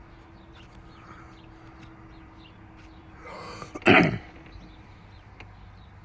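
A man coughs once, sharply, about four seconds in, just after a short intake of breath.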